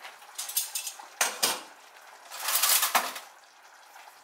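Metal tongs and a ceramic plate clinking and scraping against a metal wok as zucchini noodles are handled: a few short clinks in the first half, then a longer, louder clatter about two and a half seconds in.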